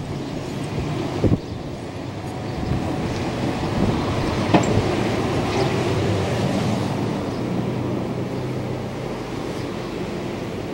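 Steady rumble of city street traffic below an upper-floor window, with a sharp knock about a second in and a lighter click a few seconds later.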